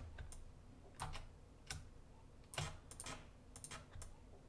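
Faint clicks and key taps of a computer mouse and keyboard, coming irregularly about two a second, some in quick clusters.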